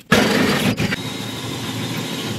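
Cordless drill running under load as a 3/8-inch bit bores through the aluminum diamond-plate floor of a truck tool box. It starts suddenly, and a steady high whine joins about a second in.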